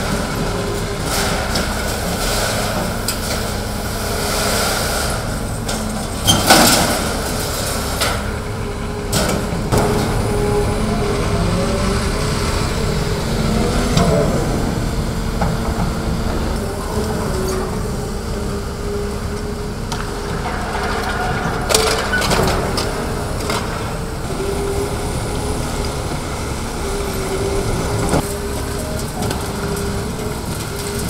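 Long-reach demolition excavator's diesel engine and hydraulics running steadily, with intermittent crunches and knocks as its crusher jaws break concrete wall and sheet metal. The loudest crunches come about six seconds in and around twenty-two seconds in.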